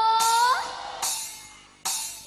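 A dangdut band striking up a song. A long held note slides upward and stops about half a second in, cymbal crashes ring out twice and fade, and a sharp drum hit lands just before the band comes in.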